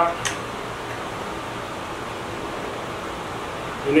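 Steady, even hiss of background room noise, with no distinct event in it.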